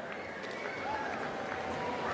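Audience applauding steadily at moderate level for a graduate crossing the stage.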